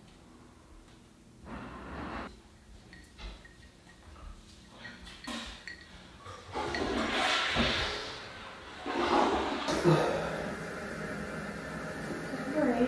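Water rushing into a toilet bowl. It starts about six and a half seconds in and lasts about two seconds, then a second, shorter rush follows about nine seconds in.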